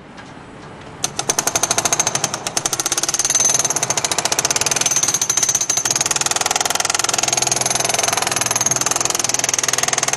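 Hydraulic breaker on a remote-controlled demolition machine hammering a reinforced concrete wall. It starts about a second in and keeps up a loud, rapid, continuous stream of blows.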